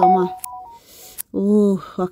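A person's voice with two steady beep-like electronic tones that cut off within the first second, then a short held vocal sound about one and a half seconds in.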